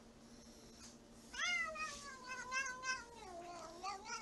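A black-and-white domestic cat giving one long, drawn-out meow that starts about a third of the way in, slides down in pitch and wavers before it fades near the end.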